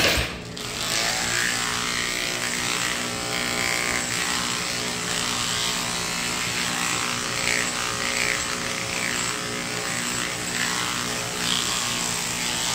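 Cordless electric dog grooming clipper, fitted with a new blade drive, switches on with a click at the start, then runs with a steady motor hum as it cuts through the schnauzer's coat.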